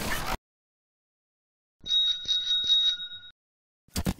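A bicycle bell rings for about a second and a half, starting about two seconds in. Short bursts of static-like noise sit at the very start and just before the end.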